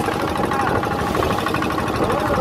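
Small wooden motorboat's engine running steadily under way, a fast, even chugging.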